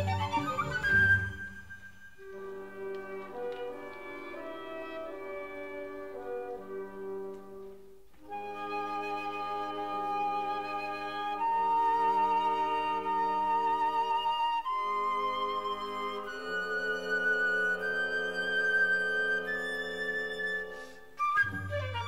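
Solo flute with symphony orchestra: long held notes with vibrato over sustained chords. A busier, louder passage ends about a second in, the music grows louder about eight seconds in, and another busy passage begins near the end.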